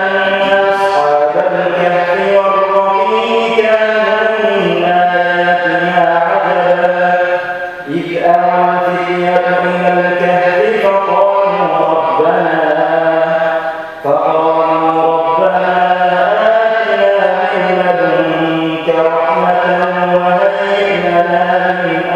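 A male voice reciting the Quran in the melodic tajwid style, holding long, ornamented notes that glide between pitches. Two short pauses for breath come about eight and fourteen seconds in.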